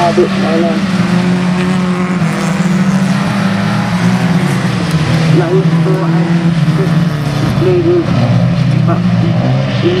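Engines of several stock hatchback autograss cars racing together on a dirt track, a steady mixed engine note held at high revs.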